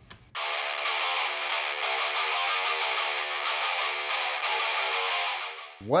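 Distorted electric guitar music, thin with no bass, starting a moment in and cutting off just before the end.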